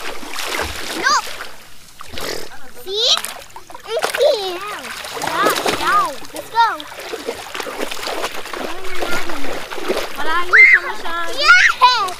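Young children's high voices calling out while they splash about in shallow sea water, with a burst of higher, louder calls near the end.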